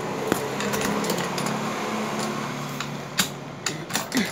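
Coin-operated arcade drop game running with a steady hum, with a few sharp clicks and clinks of coins scattered through it.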